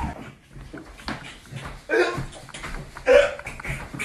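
Two short, excited laughing outbursts from young men, about two and three seconds in, over scuffling and light knocks as they move about.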